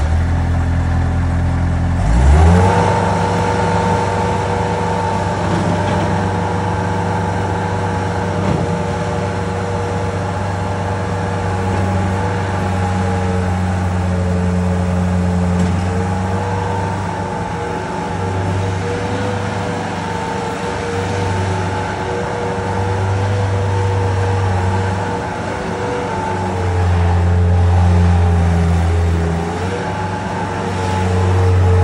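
Bobcat skid steer's diesel engine, just started, revving up about two seconds in and then running steadily at high speed as the machine drives about, its pitch dipping briefly a few times under load.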